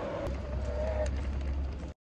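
Wind buffeting a phone's microphone, a low rumble, with a wavering tone for about the first second. The sound cuts off abruptly just before the end.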